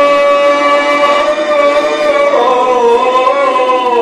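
A male reciter's unaccompanied voice chanting a marsiya (Urdu elegy for Hazrat Zainab), holding one long drawn-out note that wavers and drops lower about two seconds in.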